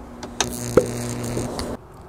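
A sharp click as the battery shut-off switch is turned on, then a steady electrical buzz with a hiss over it that cuts off suddenly after about a second and a half.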